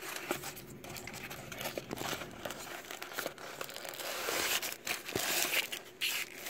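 Small cardboard product box being opened by hand: the end flap is worked open and the packaging inside is pulled out, with crinkling and rustling and many small clicks and scrapes.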